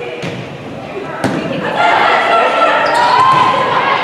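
Volleyball being played in an echoing gym: two sharp smacks of the ball being hit, the louder about a second in. Then players and spectators shout, louder from about two seconds in.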